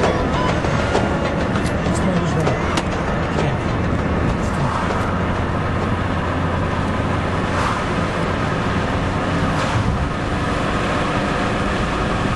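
Car driving along a highway, heard from inside the cabin: steady engine and road noise with a constant low hum, mixed with indistinct voices and faint music.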